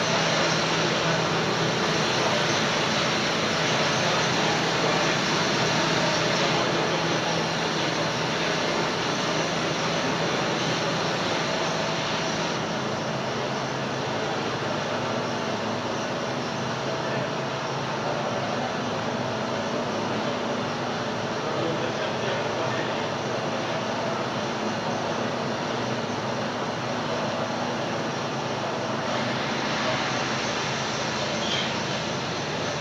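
Steady, loud machinery noise of a running sawdust-fired biomass steam boiler plant: a dense constant noise with a low hum underneath and no breaks or impacts.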